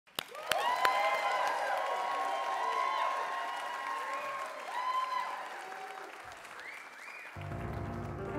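Audience applause with overlapping cheers and whoops. Near the end it gives way to instrumental music beginning the introduction of a song.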